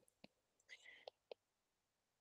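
Near silence: room tone with a few very faint ticks and a brief soft breathy sound about a second in.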